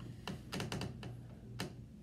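A run of irregular light taps and clicks, several a second, over a steady low hum.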